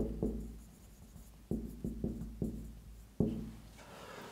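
Marker writing on a whiteboard: a run of about seven short strokes, each starting sharply and dying away quickly.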